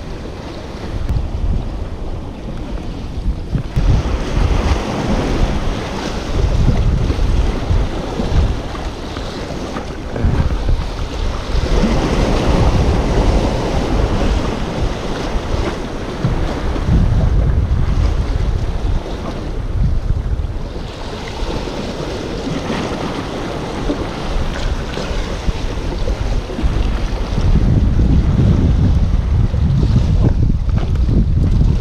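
Sea waves washing against the rocks and concrete tetrapods of a breakwater, the wash swelling and fading in surges every few seconds. Gusty wind buffets the microphone underneath in low rumbles.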